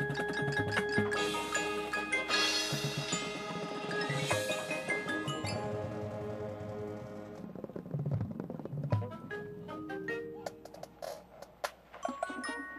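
Marching band playing: held chords over drumline hits, with front-ensemble mallet percussion. About seven seconds in the full sound drops away to a sparser, quieter passage of short mallet notes and light percussion.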